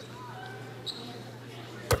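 A basketball bounced once on a hardwood court near the end, a free-throw shooter's dribble at the line, over a low steady arena hum.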